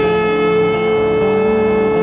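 Heavy metal band playing live: a long, sustained, distorted electric guitar note held steady, over lower bass notes that step to a new pitch a couple of times.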